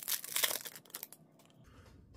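Foil wrapper of a hockey card pack being torn open and crinkled by hand, a quick run of crackling in about the first second.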